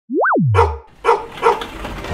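Channel logo sound effect: a quick cartoon boing that swoops up and back down, followed by three short dog barks about half a second apart.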